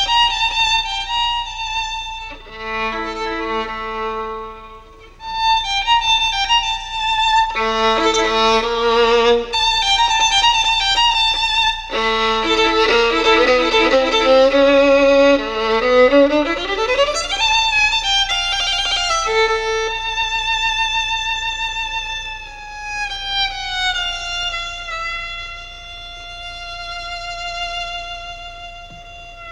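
Solo violin played with the bow, the notes held with vibrato, some passages sounding several strings at once. Past the middle it slides upward in pitch, then settles into long held notes at the end.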